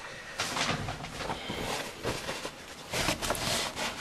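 Paper towel being pulled from a roll and handled, a papery rustling with a few light knocks, louder about three seconds in.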